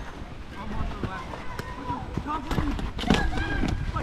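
Faint voices of onlookers talking in snatches, over a low steady rumble of wind on the microphone.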